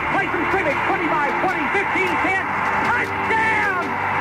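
Archival radio play-by-play: an announcer calls a game in a rapid, excited voice over steady crowd noise. The sound is thin, with its top end cut off, like an old AM broadcast recording.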